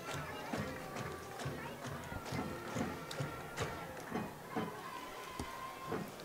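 Football stadium crowd ambience: distant voices with faint music and occasional sharp clicks, and a steady held tone in the last couple of seconds.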